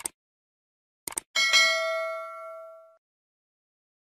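Sound effects from a subscribe-button animation: a single mouse-click sound, then two quick clicks about a second in. These are followed by a bell 'ding' notification chime of several ringing tones, which fades out over about a second and a half.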